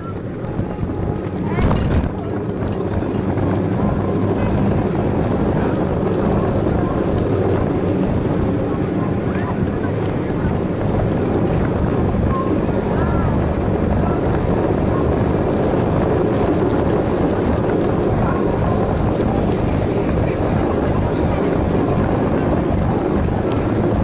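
Wind rushing over the microphone of a moving action camera, with rolling noise, steady throughout, and a couple of short knocks in the first two seconds.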